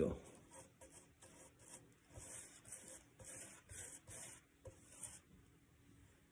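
Faint swishing strokes of a paintbrush working wet epoxy over rough live-edge bark, about one stroke a second, stopping about five seconds in.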